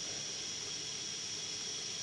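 Steady hiss of a gas burner heating a beaker water bath, with a thin high whistle running over it, while a sample tube is warmed for the ninhydrin test.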